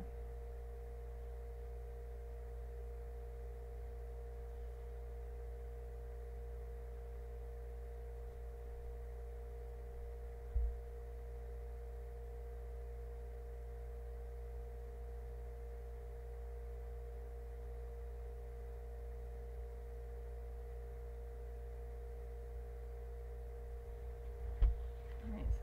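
Steady electrical hum with a couple of steady tones, and a single low thump about ten seconds in.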